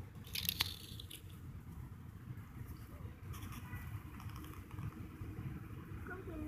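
Dry fallen leaves crackling and rustling, with a cluster of sharp crunches in the first second and fainter scattered crackles after, over a steady low rumble.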